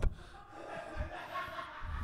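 A short pause in studio conversation: faint room tone with soft low sounds, likely breath or movement near the microphones.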